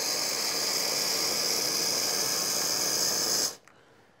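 Hot water dispensing from a Bezzera Aria TOP espresso machine's hot water wand into a glass: a steady hiss of water and steam that cuts off suddenly near the end as the valve is closed.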